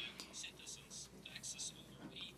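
Faint, whispery speech in the background, heard in a pause between the interpreter's sentences.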